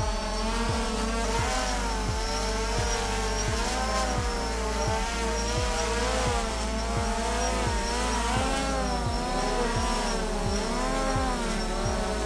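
DJI Phantom quadcopter's rotors whining as it hovers with a basket swinging on a rope beneath it. The pitch keeps rising and falling as the motors correct against the swaying load, which is close to making it crash.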